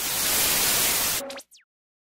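Television static hiss, loud and even, lasting about a second and a half and cutting off abruptly, followed at once by a short whistle that falls quickly in pitch, like a set switching off.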